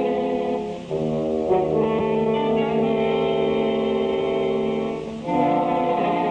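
Dramatic orchestral film score: held brass chords that shift to a new chord about a second in and again near the end.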